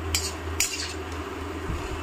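A metal ladle clinking against an aluminium kadhai, two sharp clinks in the first second, over a steady low hum.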